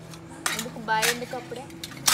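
Stainless steel plates and bowls clinking against each other as they are handled, a few sharp clinks spread over the two seconds.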